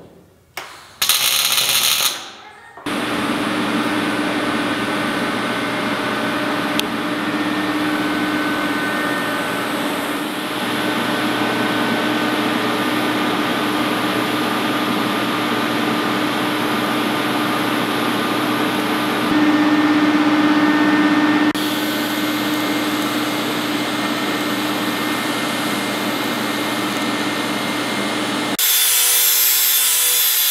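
A steady power-tool whir with a faint steady hum, shifting slightly at each cut. Near the end a cordless angle grinder grinds steel.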